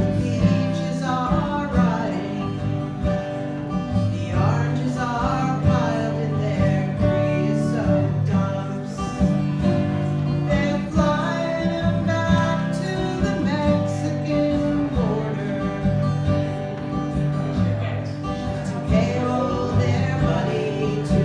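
A woman singing a folk song while strumming an acoustic guitar.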